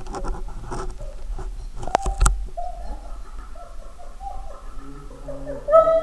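Water splashing and lapping around a German shepherd in an indoor hydrotherapy pool, with a couple of sharp splashes about two seconds in, followed by the dog whining in short, high, wavering notes.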